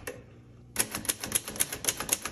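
Manual typewriter, a 1950 Royal Quiet Deluxe portable, being typed on: a quick, even run of keystrokes at about seven a second begins under a second in, each typebar snapping against the platen.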